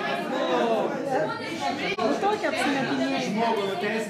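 Several people talking over one another in a large room: a murmur of overlapping voices with no single clear speaker.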